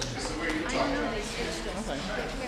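People talking in a large room, several voices overlapping, with no music playing.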